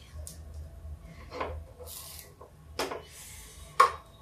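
A metal utensil scraping and knocking against a black appe (round-cavity) pan as baatis are turned in it: rubbing scrapes with three sharp clicks, the loudest near the end.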